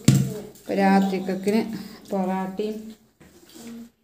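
A woman talking, in two short phrases, with a sharp knock at the very start.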